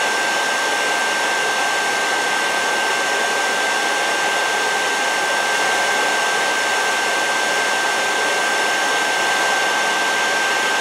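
A vintage 1970s–80s handheld blow dryer running steadily on a constant rush of air, with a steady high whine over it.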